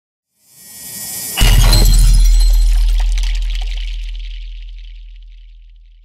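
Intro sound effect: a swelling whoosh for about a second, then a sudden cinematic impact with a deep bass boom and a glassy, shattering high shimmer that slowly fades out over about five seconds.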